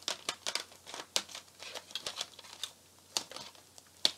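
Plastic CD jewel case being opened and handled: a quick run of small clicks and crackles through the first couple of seconds, then a single sharper click a little after three seconds in.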